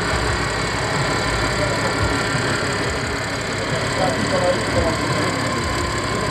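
Supercharged 3.0 TFSI V6 of a modified Audi A7 idling steadily, with people's voices faintly in the background.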